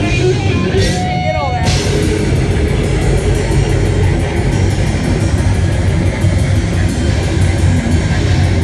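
Metal band playing live at full volume: heavily distorted electric guitar riffing over fast drums and cymbals.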